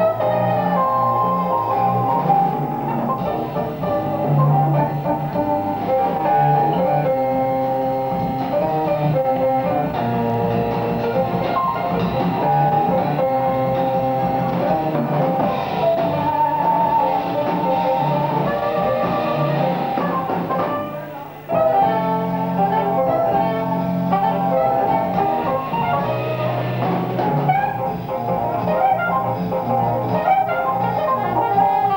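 Live small-group jazz: a saxophone line over piano, upright bass and drum kit, with a short drop in volume about two-thirds of the way through before the band comes back in.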